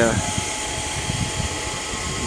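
Steady hum of an air compressor running in the background, with a faint steady whine over it. The compressor drives the pyrolysis unit's small turbocharger.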